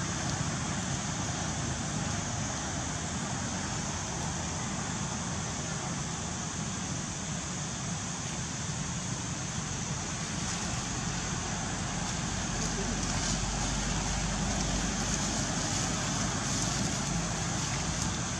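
Steady outdoor background noise: a constant hiss like wind or distant traffic, with no single clear source standing out.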